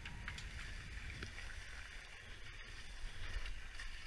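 Skis sliding and scraping over packed snow in a steady hiss as the skier glides off the chairlift, with a few light clicks near the start. A low rumble of wind runs on the helmet-camera microphone.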